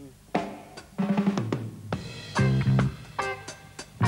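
Drum kit playing a one-drop reggae beat with a triplet feel: the bass drum falls on beat three with a rim click on the snare, and hi-hat strokes fill in between. Sustained low notes join in a little past halfway.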